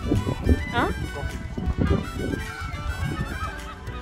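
Waterfowl giving a few short calls at the water's edge, over background music.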